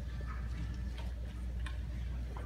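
Quiet hall room tone: a steady low hum with a few faint, scattered clicks and small knocks.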